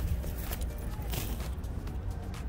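Soft footfalls of a Vizsla puppy's paws on grass as it runs up, over a steady low rumble of wind on the microphone and faint distant voices.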